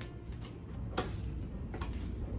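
Scissors snipping through pothos stems and leaves: a few short sharp clicks, the loudest about a second in.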